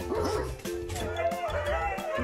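Several huskies vocalizing in gliding, whining howls over steady background music.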